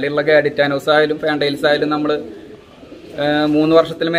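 Pigeons cooing under a man's speech.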